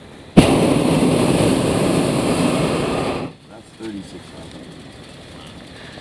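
Hot air balloon's propane burner firing: one loud blast of about three seconds that starts suddenly and cuts off.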